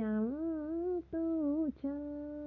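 A single voice singing Dao pa dung folk song in long held, wavering notes. The pitch dips, rises and sways, breaks off twice briefly, then settles on one steady held note near the end.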